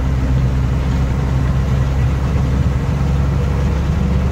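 Truck engine running steadily as the truck drives along, a low even hum heard from inside the cab.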